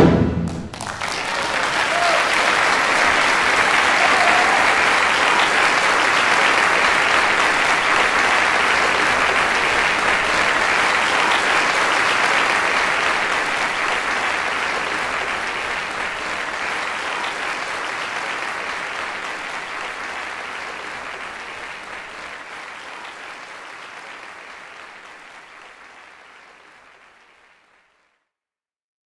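Concert audience applauding. The clapping builds up within the first two seconds, holds steady, then fades away gradually to silence near the end.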